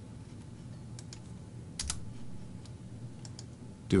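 A few separate computer keyboard keystrokes, sparse clicks with two close together near the middle, over a steady low hum.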